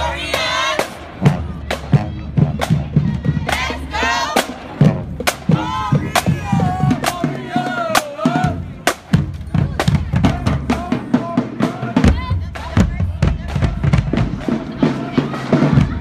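High school marching band drumline playing a cadence: rapid snare drum and bass drum hits with cymbal crashes.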